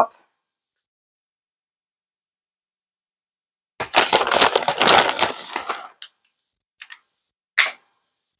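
Plastic pouch of bacon bits crinkling and crackling as it is handled, starting about four seconds in and lasting about two seconds, followed by two or three short, faint clicks.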